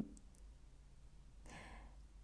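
Near silence of a quiet room, with a soft breath from a woman pausing in thought about one and a half seconds in.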